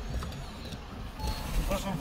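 A car moving slowly on a wet road and pulling up, its engine and tyres making a steady low rumble. A man's voice comes in faintly about halfway through.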